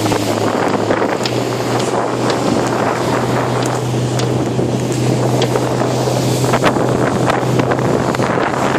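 Small motorboat under way: a steady low engine drone beneath heavy wind buffeting the microphone and the rush of water past the hull.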